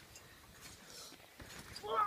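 Soft thuds of a trampoline bed under repeated bounces, about twice a second. A short vocal cry comes near the end as the jumper goes into a flip.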